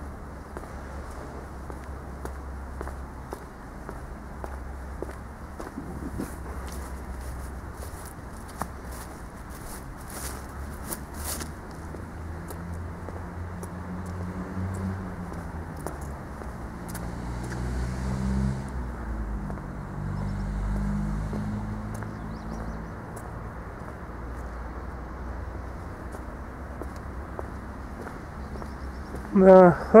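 Footsteps on paving stones over a steady outdoor background. Partway through, a motor vehicle passes: its low engine hum builds, is loudest around the middle and fades again.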